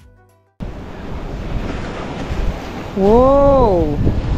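Background music fades out, and about half a second in, wind noise on the microphone and sea surf start abruptly. Near the end, a person's voice gives one drawn-out call that rises and then falls in pitch.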